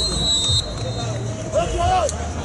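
Referee's whistle blown once, a short steady high tone in the first half-second, as a set piece is signalled. Players and spectators shout near the end.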